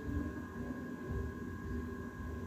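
Steady background hum with two faint high whining tones held throughout, over an uneven low rumble.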